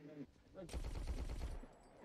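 A rapid burst of automatic gunfire from the film's soundtrack, faint and playing for about a second from roughly half a second in.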